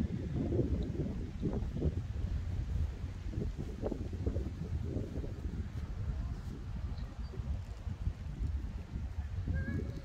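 Outdoor park ambience dominated by a low, uneven wind rumble on a handheld phone's microphone.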